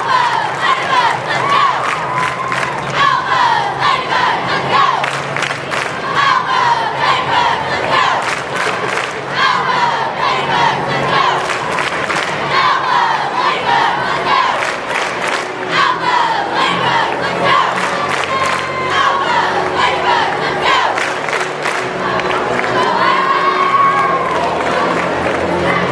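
Basketball crowd in an arena cheering and yelling, with many hands clapping throughout.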